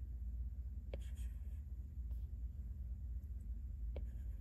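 A stylus tip taps once on a tablet's glass screen about a second in, then briefly slides across it with a faint scratch, over a steady low hum.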